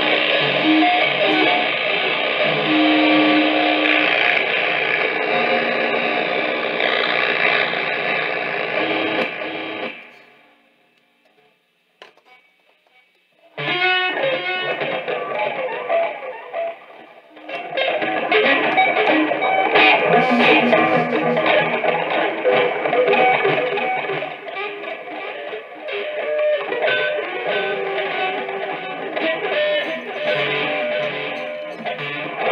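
Amplified prepared electric guitars played in free improvisation: a dense, noisy sustained texture that fades out about ten seconds in, gives way to a few seconds of near silence, then starts again abruptly. After the gap a green rod is pressed across the strings of the red Fender guitar, and the playing turns into vigorous scraped and struck noise.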